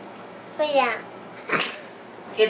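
A high-pitched voice gives a short call that falls in pitch, then about a second later comes a short, sharp burst of noise.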